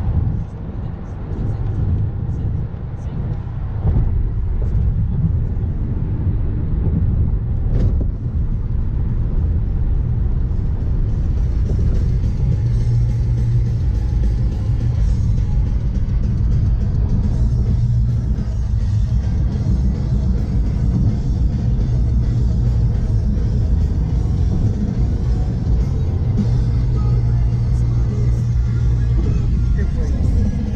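Steady low rumble of a car cabin at highway speed, with music playing over it. The music grows fuller after about ten seconds.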